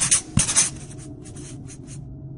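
A quick run of scratchy strokes in the first second or so, thinning out and stopping, then only a faint low hum.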